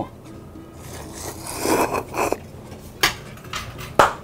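Cold corn noodles being slurped into the mouth in a long noisy draw from about a second in to past two seconds, with a sharp click near the three-second mark. Soft background music runs underneath.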